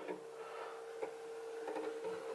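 Faint steady hum, with one light tap about a second in.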